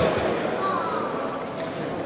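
Audience applause dying away to scattered claps, with the murmur of voices underneath.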